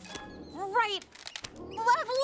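A young woman laughing with short, high, sliding exclamations, over film-score music; a few light clicks fall in the middle.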